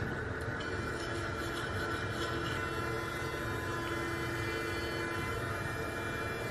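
Electric sonic toothbrush buzzing steadily while brushing teeth.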